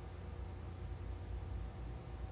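Steady low electrical hum from the high-voltage power supply driving a Lichtenberg figure burn at about 60 percent power, with current running through the wetted wood as a quiet glow rather than arcing.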